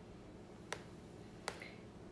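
Two short, sharp clicks about three quarters of a second apart, from fingers tapping on the phone that is recording, over a faint background hum.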